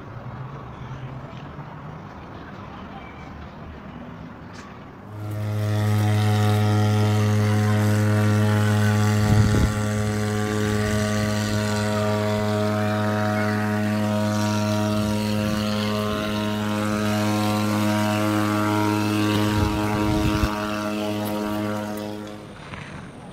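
A loud, steady, low machine hum at a constant pitch starts suddenly about five seconds in, over a noisy outdoor background.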